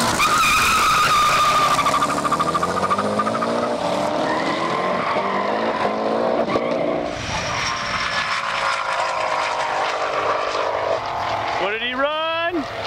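A 2006 Mustang GT with a twin-turbo 4.6 Terminator Cobra V8 launches from a standing start alongside another car and accelerates hard, its engine note climbing and dropping back with each upshift. Near the end a car passes close at about 190 mph, its pitch sweeping sharply.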